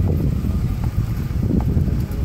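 Wind buffeting the microphone in an uneven low rumble, with a few faint clops of horses' hooves walking on wet pavement.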